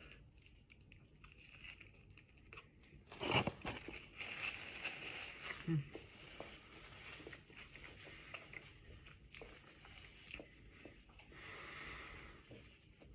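A crunchy bite into a crispy breaded chicken sandwich about three seconds in, followed by close chewing with small crackles and clicks.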